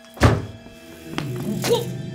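A door shuts with a heavy thud, then a low, steady droning score comes in about a second later.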